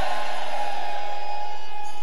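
A steady, sustained chord held on a keyboard, with no change in pitch or loudness.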